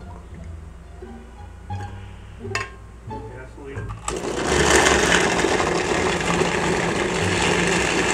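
Countertop blender switched on about four seconds in and running loud and steady, grinding chunks of fresh coconut with water into coconut milk. Before it starts, a few light knocks and clatters as the coconut pieces go into the glass jar.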